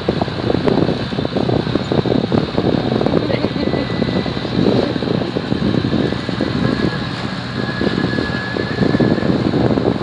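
Wind buffeting the microphone over the steady drone of a tour boat's engine under way.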